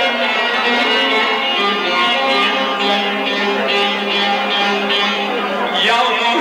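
A saz (bağlama) played live: plucked strings in a continuous instrumental passage of held, ringing notes.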